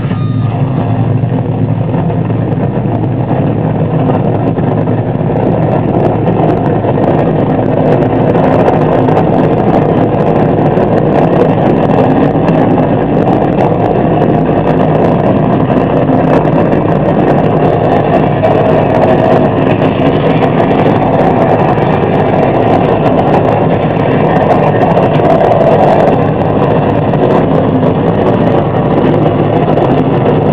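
Harsh noise wall performed live on electronics through a PA: a loud, dense, unbroken wash of distorted noise, heaviest in the low and middle range, hardly changing throughout.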